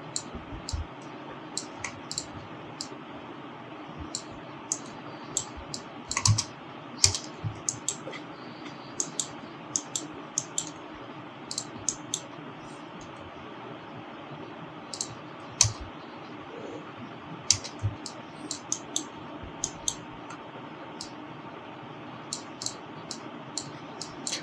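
Irregular, scattered clicks of a computer keyboard and mouse being worked, over a steady background hiss.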